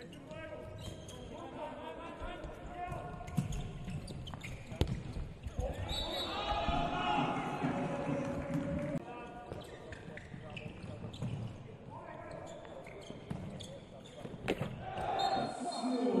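Live handball game sound in a near-empty hall: the ball bouncing on the court and several sharp ball impacts, with players shouting on court.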